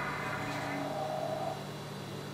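Steady low electrical hum, with a faint voice in the background.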